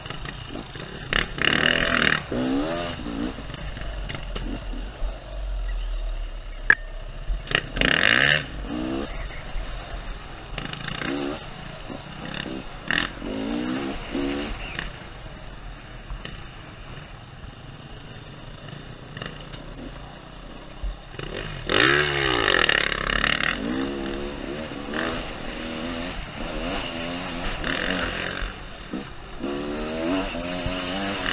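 Enduro motorcycle engine, heard from the rider's own Beta, revving up and down over and over as it is ridden off-road, with a loud surge of revs every few seconds. Other dirt bikes' engines run ahead of it.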